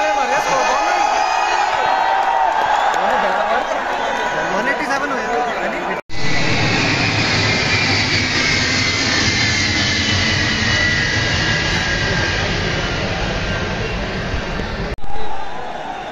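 Stadium crowd noise with many voices, then after a cut a jet aircraft flying overhead: a steady rush with a slowly falling whine lasting about nine seconds, ending in another cut back to crowd noise.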